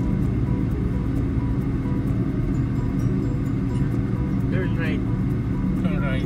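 Steady road and engine rumble inside a moving car's cabin, with music playing underneath and a brief wavering voice-like sound near the end.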